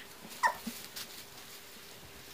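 A Siberian husky puppy gives one short, high squeal about half a second in, falling in pitch.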